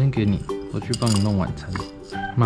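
Ceramic cat food bowls clinking as they are picked up and set against one another and the wooden feeder stand, with dry kibble moved between them. A voice and background music run underneath and are as loud as the clinks.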